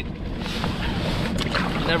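Steady wind noise on the microphone aboard a small open skiff at sea, with a man's voice starting at the very end.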